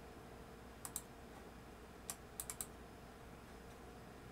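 Computer keyboard keys pressed in short bursts: two quick clicks about a second in, then a quick run of four around two and a half seconds, over a faint steady hum.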